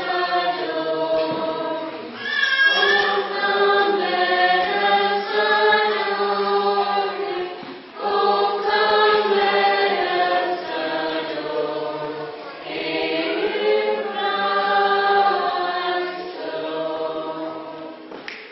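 Mixed choir of men's and women's voices singing a hymn in long sustained phrases, with short breaks between phrases about two, eight and twelve seconds in.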